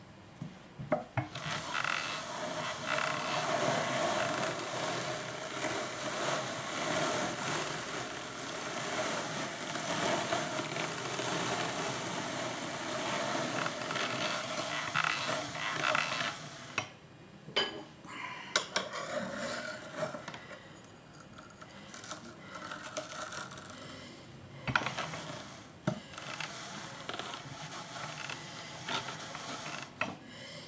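Wooden hand-cranked drum carder being turned, its wire-toothed drums combing fleece through as a steady scratchy noise for about fifteen seconds. The noise then stops, and scattered clicks and lighter scraping follow as the drums and carding cloth are handled.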